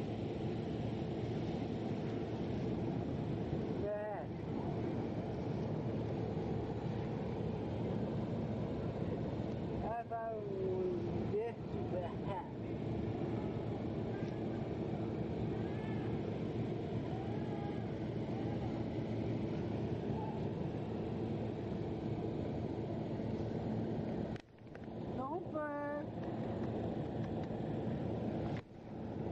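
Steady outdoor background rumble with a faint hum, broken by a few brief human vocal sounds about four, ten and twenty-five seconds in.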